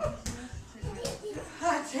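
Indistinct voices over faint background music, with a few short low thumps early on.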